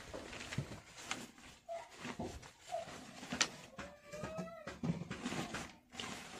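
Plastic bag crinkling and rustling as it is pulled over a bucket and pressed down as a cover, with a few sharp crackles. A few short animal calls sound in the background, the longest a rising call just after the middle.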